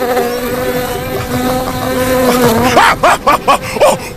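A steady, high buzzing bee sound effect for a puppet bee flying close. It gives way near the end to a quick series of short cries.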